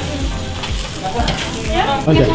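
Chicken sizzling on a hot grill grate.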